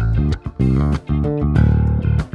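Yamaha TRBX174 four-string electric bass played fingerstyle: a run of short plucked notes, then a longer held note near the end.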